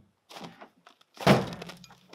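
A fold-down table panel on a Jeep's rear spare-tire carrier is swung shut, with a few light knocks and then one loud thunk about a second in, followed by a brief low ring.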